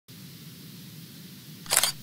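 Intro ident sound effect for a news logo: a faint steady low hum, then a short bright swish just before two seconds in as the logo sweeps onto the screen.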